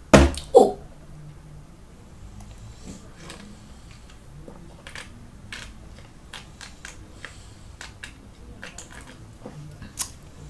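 Two sharp knocks right at the start, then a long drink of malt liquor from a 24 oz can: faint swallowing gulps and mouth clicks every half second or so, picked up close to the microphone.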